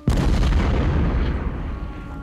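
A single sudden explosion boom, with a deep rumbling tail that fades over about two seconds.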